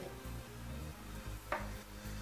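Hands squeezing and shaping a stuffed nylon stocking on a wooden table, with faint fabric handling noise and one light knock about one and a half seconds in, over quiet background music.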